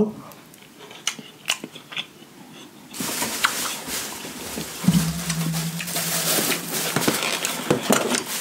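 Close-miked chewing of a mouthful of hibachi fried rice: small wet mouth clicks at first, then denser chewing noise from about three seconds in. A long steady hummed "mmm" comes in about five seconds in and lasts a couple of seconds.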